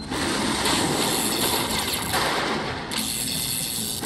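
Slot machine win sounds: the machine's celebration music and rapid count-up effects play as the win meter tallies the payout.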